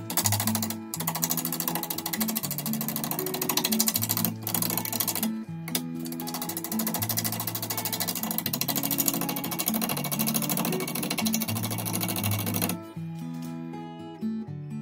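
A turning tool cutting a large spinning ambrosia maple bowl blank on a wood lathe: a loud, fast, even chattering buzz, broken by a few short pauses, that stops about 13 seconds in. Acoustic guitar music plays underneath throughout.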